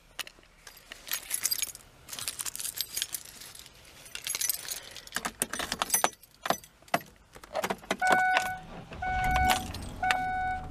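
Car keys jangling and clicking as they are handled at the ignition. From about eight seconds in a car's warning chime sounds, a half-second beep repeating about once a second, and a low rumble comes in near the end.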